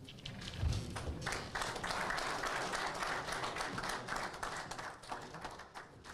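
An audience applauding, the clapping swelling about a second in and tapering off near the end. A single low thump comes just before the applause builds.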